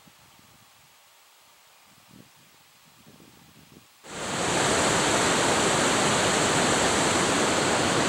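Near silence, then about halfway through the steady rush of whitewater river rapids starts suddenly and carries on evenly.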